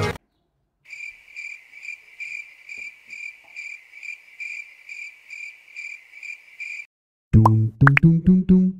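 Budgie chick cheeping: a steady run of high, evenly spaced chirps, about three a second, for some six seconds. Music starts near the end.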